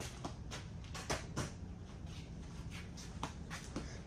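Faint, scattered light clicks and knocks from tools being handled, with low, steady room noise between them.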